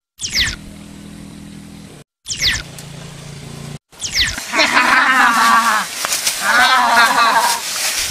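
Edited film soundtrack: three quick falling whoosh effects, each right after a brief drop to silence, over a low steady hum. From about halfway, voices chant in loud bursts about a second long.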